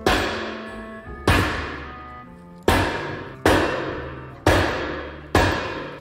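An axe striking armored bulletproof glass held in a frame, six hard blows about a second apart, each followed by a ringing that fades out.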